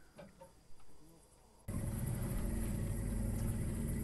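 After a quiet start, a boat's outboard motor cuts in suddenly at full level, about a second and a half in, and runs steadily with a low hum.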